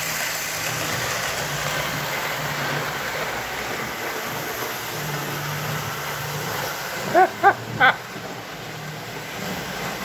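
Model trains running on a layout: a bare steam-locomotive chassis and a string of freight cars rolling over the track, giving a steady rumble with a low motor hum.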